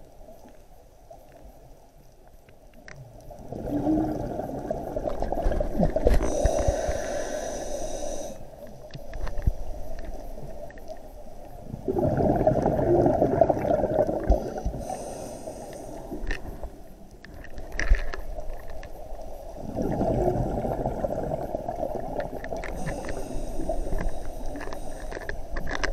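Scuba regulator breathing underwater: three long bursts of exhaled bubbles, roughly eight seconds apart, with short high hisses from the regulator in between.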